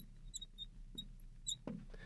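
Marker pen squeaking faintly on a glass lightboard while writing, in short high chirps with small ticks as the tip lifts and touches down.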